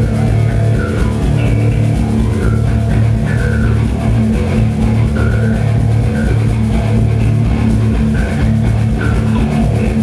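Rock band playing loud, steady rock music: electric guitar, bass guitar and drum kit.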